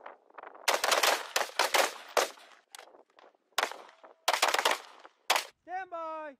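Rifle fire on a range: rapid strings of shots in quick succession, a fast run about a second in, then scattered shots and two more quick groups near the end.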